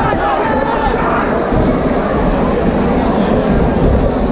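Boxing crowd shouting and cheering, many voices overlapping into a steady din.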